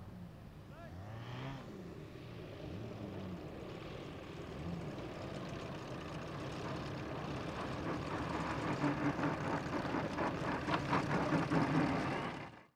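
Engines of large radio-controlled aerobatic biplanes running at low speed as they taxi, changing pitch now and then and growing louder as they come closer, loudest near the end.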